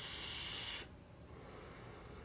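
Someone vaping an e-cigarette: a soft, breathy hiss that stops just under a second in.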